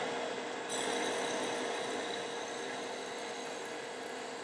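Wood lathe running while a long 5/32-inch drill bit, held and pushed in by hand, bores into a spinning wooden pen blank: a steady cutting and rubbing noise over the lathe's constant hum.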